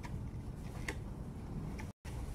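A screwdriver tip picking at metal fragments stuck in a cordless grinder's plastic housing, giving three or four sharp clicks over a low steady rumble.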